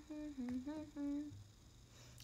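A woman humming a short run of about five steady notes with her lips closed, stopping about a second and a half in.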